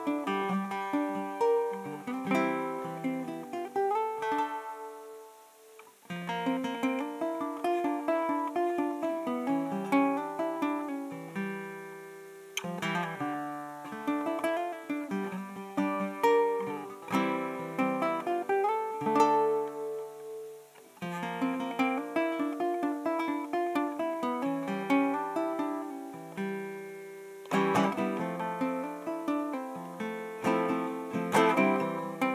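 Solo ukulele playing a plucked melody over chords, in phrases that pause briefly about five and twenty seconds in, with a few notes sliding up in pitch.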